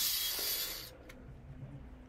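A steady, even hiss with no motor whine in it, fading over the first second and cutting off sharply about a second in, leaving only a faint low rumble.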